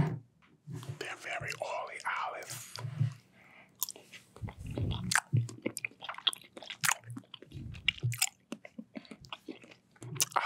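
Metal fork clicking and scraping against the inside of a glass jar of green olives, very close to the microphone. The clicks come thick and sharp from about four seconds in, after a few seconds of soft murmured voice and mouth sounds.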